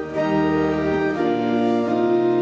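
Church organ playing sustained chords, changing chord a couple of times, as accompaniment to a congregational hymn.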